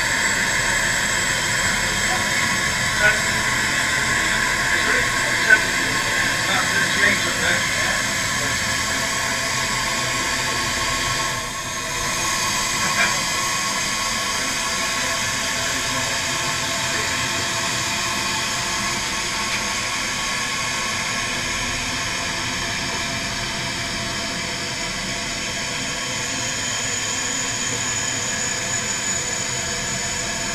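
Steady hiss of air rushing into a hyperbaric chamber as it is pressurised toward a 50 m depth equivalent, dipping briefly about eleven seconds in.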